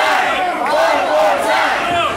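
Crowd of spectators shouting and yelling, many raised voices overlapping.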